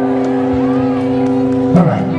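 Live band on stage holding a steady sustained chord, with a man's voice coming in over it near the end.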